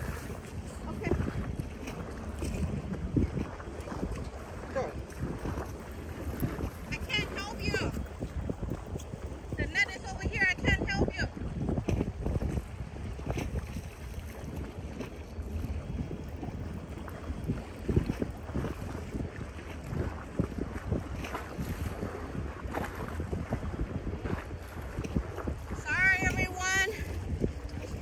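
Wind buffeting the microphone: an uneven low rumble with small gusts.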